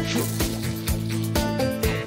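Background music with a steady beat, about two beats a second, under sustained pitched notes.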